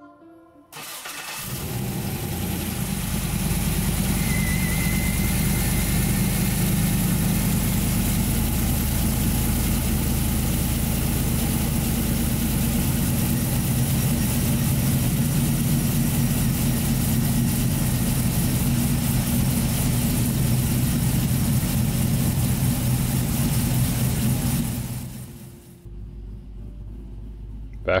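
Cammed LS3 6.2-litre V8 (VCM 532 cam) in a Toyota 80 Series Land Cruiser cranking briefly, starting, and then running steadily at idle. Near the end the sound drops to a quieter low hum.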